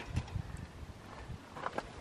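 A few faint, short taps and knocks over low outdoor background noise.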